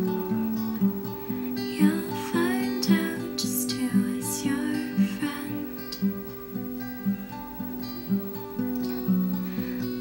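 Acoustic guitar strummed in a steady, gentle rhythm, with ringing chords and a regular stroke every half second or so.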